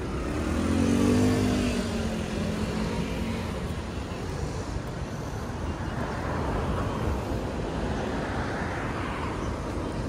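City street traffic. A motor vehicle passes close by about a second in, its engine note falling in pitch as it goes, over a steady background of traffic noise.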